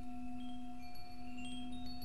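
Ambient meditation music: a steady drone of several held tones, with light high chime tinkles scattered over it.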